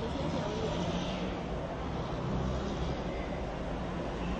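Steady city street noise: a low traffic rumble with a faint murmur of voices.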